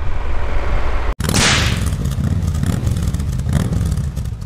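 Wind and engine rumble from an onboard camera on a moving Triumph Tiger 1200 GT Explorer motorcycle, cut off abruptly about a second in. A whoosh transition effect follows, then a steady low rumble carries on.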